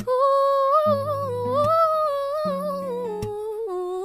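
A woman's voice holding one long wordless note that wavers slightly and drops in pitch near the end, over soft acoustic guitar notes that come in about a second in and again halfway through.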